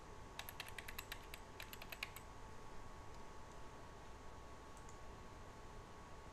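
Computer keyboard typing, faint: about a dozen quick keystrokes in the first two seconds, then a pause with only a faint steady hum.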